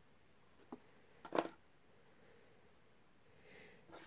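Quiet room tone, broken by a faint click just under a second in and one brief handling noise about a second and a half in.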